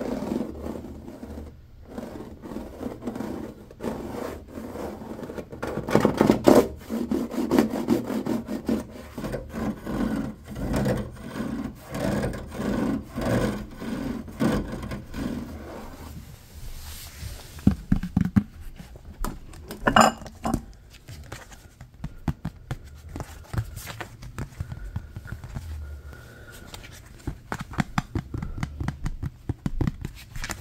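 Fingernails scratching and rubbing over the ridged plastic front grille of a GE air conditioner unit in quick, repeated strokes, with one sharp click about two-thirds of the way through.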